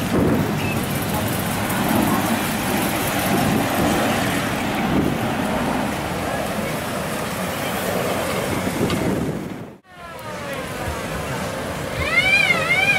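Classic cars driving slowly past, engines running under the chatter of a crowd. The sound drops out sharply for a moment near the end, and a few falling tones follow.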